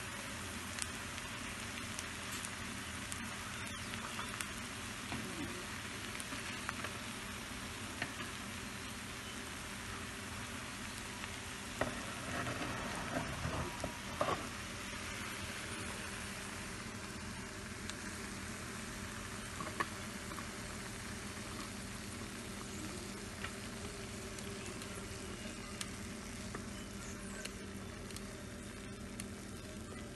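Corned beef and cabbage filling sizzling steadily in a hot frying pan, with scattered clicks and scrapes of a wooden spatula against the pan and a busier patch of clatter about halfway through as the filling is scooped out.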